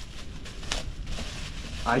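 Plastic bubble wrap around an exhaust tip rustling and crinkling as it is handled, with one sharper crackle under a second in. A man's voice begins right at the end.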